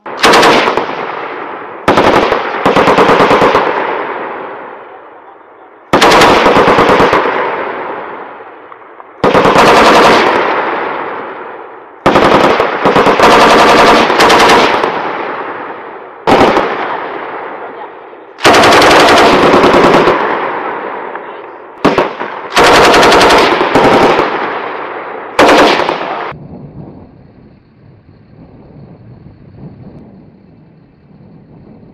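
Belt-fed machine gun firing about a dozen short bursts of rapid shots, each trailing off in a long echo; the firing stops a few seconds before the end.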